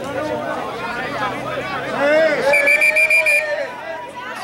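Rugby players shouting around a ruck, and about two and a half seconds in a referee's whistle sounds as a rapid string of short pips lasting about a second, with a long shout held under it.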